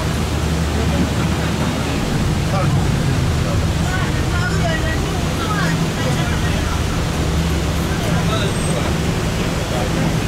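Sightseeing bus driving, heard from inside the cabin: a steady low engine hum under even road and tyre noise.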